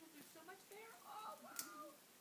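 Quiet, indistinct voice sounds, with a short sharp crinkle or click about one and a half seconds in.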